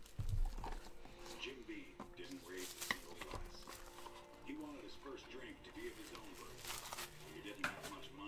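Hands handling a trading-card box and its plastic shrink wrap: a low thump about half a second in, then light knocks and cardboard rustles as the inner box and card packs are lifted out and set down.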